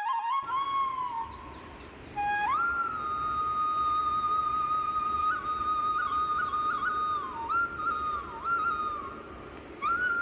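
Background music: a solo flute playing a slow melody of long held notes, decorated with quick grace-note flicks and slides between pitches.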